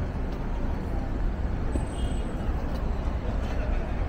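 Steady rumble of city road traffic, with faint voices of passers-by mixed in.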